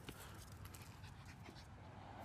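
Faint dog panting, with a few light clicks.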